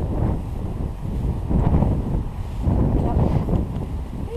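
Wind buffeting a GoPro's microphone: a low rumble that rises and falls in gusts.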